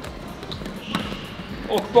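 A few sharp knocks from floorball sticks and the plastic floorball on the sports-hall floor, with a brief high squeak about a second in.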